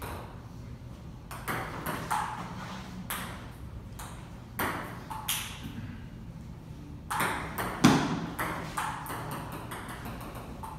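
Table tennis ball clicking off paddles and the table during a rally, in irregular single hits. A heavier knock comes near eight seconds in, followed by a quicker run of light clicks.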